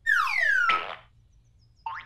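Cartoon sound effect: a descending whistle sliding down in pitch, cut off by a quick upward swoop about a second in, then a brief rising chirp near the end.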